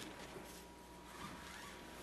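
Near silence in a room: faint hiss with a faint, steady high-pitched tone.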